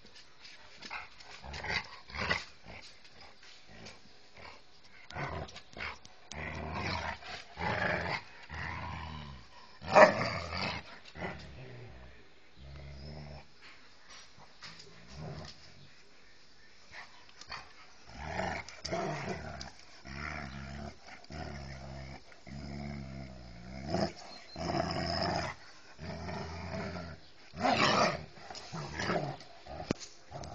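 Two husky-type dogs play-fighting, growling in short irregular bursts as they wrestle. A single sharp, loud outburst comes about ten seconds in, and several loud ones bunch together near the end.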